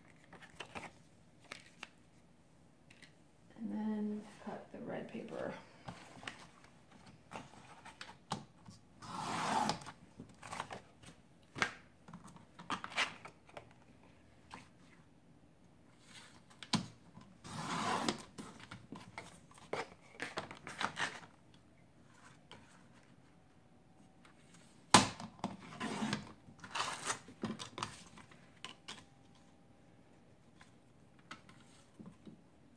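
Fiskars paper trimmer cutting glitter paper: the blade slider is drawn along the rail in two noisy strokes of about a second each, one about a third of the way in and one past halfway, with paper shuffled and shifted on the board between them. A single sharp click near the end is the loudest sound.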